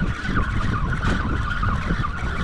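Wind and boat noise rumbling on the microphone on an offshore boat, under a steady, slightly wavering high whine.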